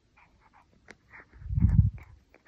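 Toy poodle puppy gnawing a chew stick: faint, irregular small clicks and crackles of teeth on the chew, with one louder low muffled puff or thud about one and a half seconds in.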